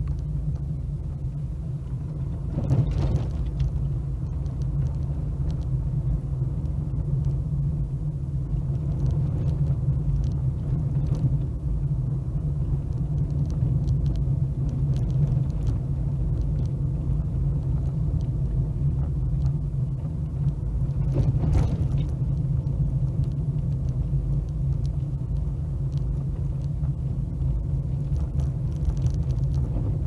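Steady low rumble of a car driving, heard from inside the cabin: engine and road noise. Two brief knocks come through, about three seconds in and again about twenty-one seconds in.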